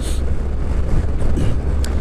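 Wind rushing over the microphone of a helmet-side-mounted action camera at road speed, over a steady deep rumble of the motorcycle and road.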